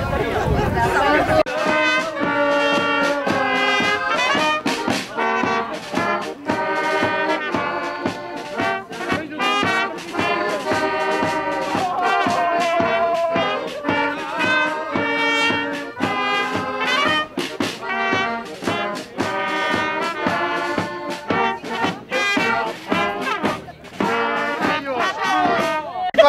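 Brass band music, with trumpet and trombone carrying the tune. It starts abruptly about a second and a half in, after brief talk.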